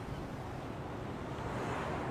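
Steady seaside ambience of wind and sea surf, an even rushing noise with no distinct events.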